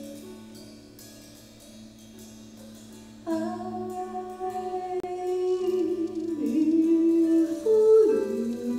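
Jazz trio: an electric archtop guitar's chord rings out softly, then about three seconds in a woman's voice enters into a microphone, singing long held notes over the guitar and growing louder toward the end.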